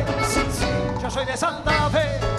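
Live cumbia santafesina band playing between sung lines, with percussion and bass; the bass and drums drop out briefly about one and a half seconds in, then come back.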